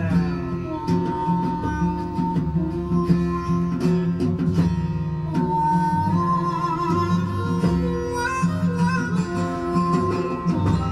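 Instrumental stretch of a country-blues song recording: plucked guitar over a steady bass, with a lead line holding long notes.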